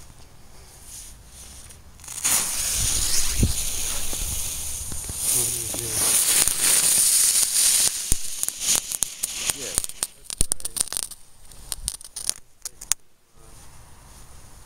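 Ground firework spraying sparks: a loud hissing rush starts about two seconds in, turns to rapid crackling pops about eight seconds in, and dies out near the end.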